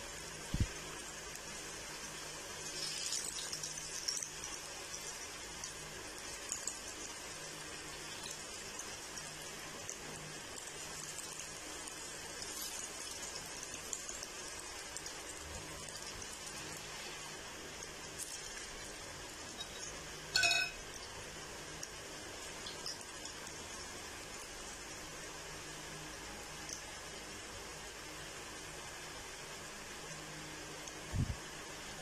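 Batter-coated cauliflower florets deep-frying in hot oil in a kadai: a steady sizzling hiss. About twenty seconds in there is a short metallic clink.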